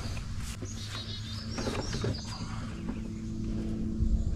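Small birds chirping over a steady low hum, with a few light knocks.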